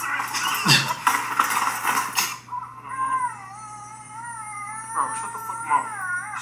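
A fake baby's recorded crying, a wavering high wail, starts about two and a half seconds in and runs on. Before it comes a couple of seconds of loud rattling and clatter.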